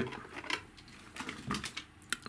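A few light clicks and knocks of hands handling a small plastic battery charger and setting it down on a cutting mat.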